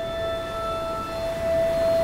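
Background score: one sustained high drone note held steady over a low, rumbling ambient bed.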